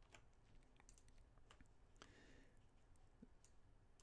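Near silence with a few faint computer-mouse clicks, scattered and irregular.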